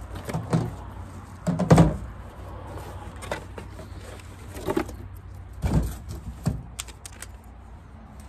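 A cardboard box being unpacked by hand: rustling cardboard and packaging, and a plastic water container lifted out. There are a few sharp knocks, the loudest about two seconds in and again near six seconds.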